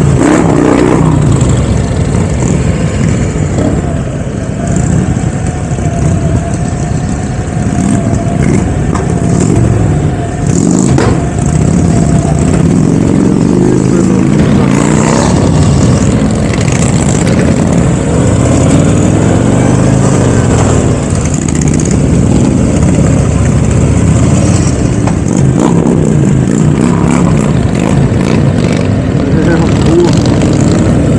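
Motorcycle engines running as a group of motorcycles rides off together. The engine note rises and falls several times with acceleration and gear changes.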